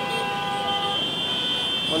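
Vehicle horns sounding in busy street traffic: one held horn tone, then a higher-pitched horn taking over about a second in, over a steady hum of traffic.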